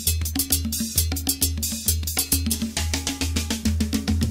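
Sinaloan banda wind-band music: a percussion-led passage of rapid drum and cymbal hits over a repeating low bass line, with sustained horn notes starting to come in softly in the second half.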